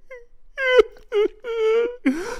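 A woman wailing in exaggerated, comic crying: three drawn-out high sobs, the last one the longest.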